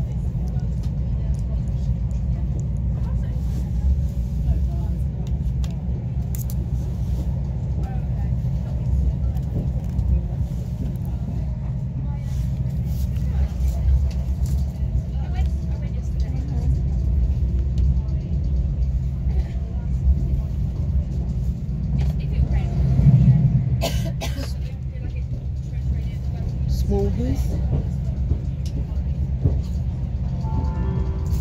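Steady low rumble of a train running at speed, heard from inside a passenger coach of a train hauled by a Class 68 diesel locomotive, with a few sharp clicks and a brief louder swell near the end.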